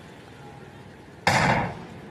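A starting pistol fired once to start a hurdles race: a single sharp bang about a second in, dying away within half a second.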